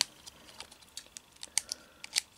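Light plastic clicks and ticks as the Chopper action figure's small jointed arms are folded in and tucked into its domed head, a few irregular clicks spread over two seconds.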